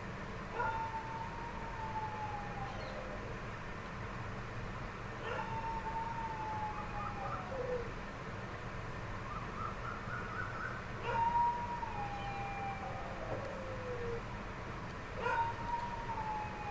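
Four long howl-like calls, a few seconds apart. Each starts suddenly, holds near one pitch and then slides down, and the last runs on past the end. Under them is a low steady hum.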